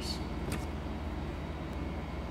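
Steady low room hum, with a pen briefly scratching on paper at the start and a single light click about half a second in.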